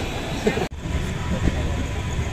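Voices chattering on a station platform. After an abrupt cut about a second in, the steady low rumble of a passenger train running along the rails.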